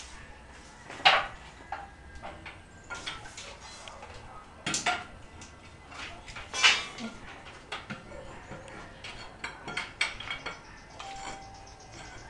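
Irregular metallic clinks and knocks from galvanized steel water pipes being handled on a concrete floor, with a few louder knocks at about one, five and seven seconds in.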